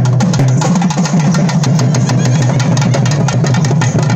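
Loud, fast drumming on a thavil-style barrel drum, played as folk music for karakattam dancing, with a steady low drone underneath.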